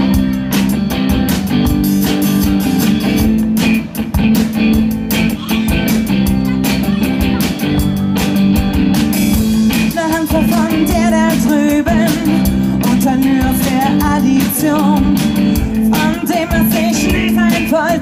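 Live rock band playing through a PA: electric guitar, bass guitar and drum kit keeping a steady beat. About halfway through, a woman's singing voice comes in over the band.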